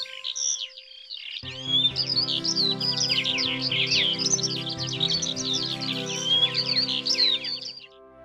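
Many birds chirping and twittering in quick, overlapping calls, with background music coming in about a second and a half in; the chirping fades out near the end.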